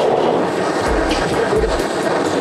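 Handheld butane kitchen torch burning with a steady hiss, caramelizing the sugar on top of a dessert.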